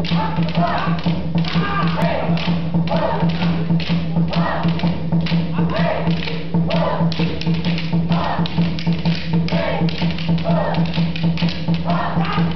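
Fighting sticks clacking against each other again and again as several pairs of performers strike, with voices and music over them and a steady low hum underneath.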